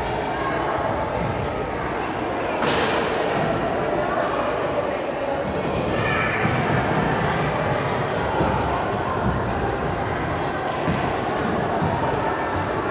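Repeated thuds and creaks of a competition trampoline bed as a child bounces through a routine, reverberating in a large sports hall over background voices. A single sharp bang comes about three seconds in.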